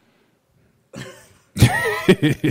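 About a second of silence, a short breath, then a man's loud, sudden cough-like burst of laughter near the end.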